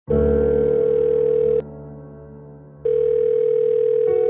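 Telephone ringing tone opening a rap beat: two long, steady beeps of about a second and a half each, with a soft, low sustained chord underneath.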